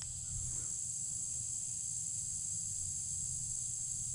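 Steady high-pitched chorus of insects droning in the summer woods, over a low steady rumble from the slowly moving truck.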